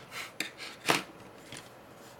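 Plastic parts of an opened DVD drive clicking and rubbing as its tray mechanism is pushed by hand, with a few short clicks, the sharpest about a second in.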